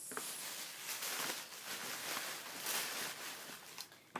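Tissue paper being stuffed by hand into a paper gift bag, rustling and crinkling unevenly.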